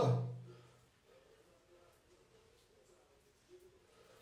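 A man's voice trailing off in the first half-second, then near silence: faint room tone.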